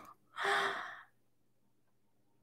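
A woman's single short breathy exhale, about half a second long, close to the microphone.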